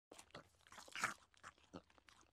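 Popcorn being chewed: a faint string of small irregular crunches, the loudest about a second in.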